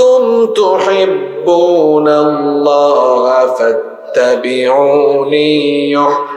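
A man's voice chanting in a long-drawn, melodic sung tone into a microphone, in the style of a Bangla waz preacher. It holds long notes that step up and down in pitch, with a short break about four seconds in.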